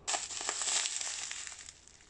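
Plastic bag of panko breadcrumbs crinkling and rustling as it is handled, starting suddenly and fading out near the end.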